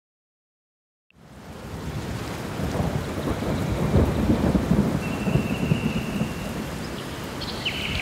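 A steady rushing noise like heavy rain with low rumbling, fading in after about a second of silence. The rumbles are strongest around the middle.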